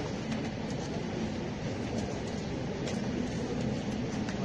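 Steady background rumble and hiss of a room recording, with a few faint clicks scattered through it.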